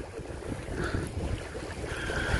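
Wind buffeting the microphone, with a low, steady wash of sea in the background.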